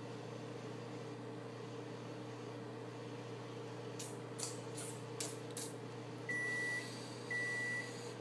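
Microwave oven giving two long, high beeps about a second apart near the end, the end-of-cycle signal that the food is done, over a steady low hum. A quick run of five clicks comes about halfway through.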